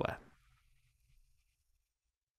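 The last syllable of a narrator's voice dying away, then near silence: faint room tone.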